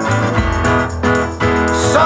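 Blues-rock band playing an instrumental stretch between sung lines: keyboard and guitar chords over bass, with no voice.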